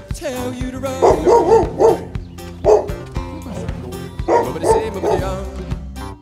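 A dog barking over background music: a quick run of about four barks a second in, a single bark near the middle, and another short run near the end.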